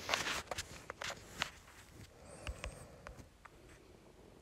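Scattered soft clicks and taps of fingers on a phone's touchscreen as a search is opened and typed into, denser in the first two seconds.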